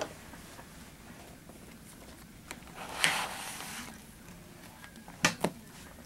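A plastic card scraping excess nail polish off a steel nail-stamping plate in one short stroke about three seconds in, followed by two quick light clicks near the end.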